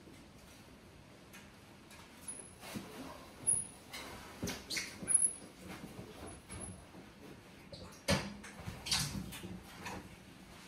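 Quiet footsteps, knocks and clunks as a heavy Harley-Davidson Sport Glide is pushed by hand onto a smooth garage floor with its engine off, with a few short high squeaks scattered through the first part and a louder clunk near the end.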